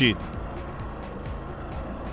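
Motorcycle running at a steady speed with wind noise on the microphone, under background music with a light, regular ticking beat.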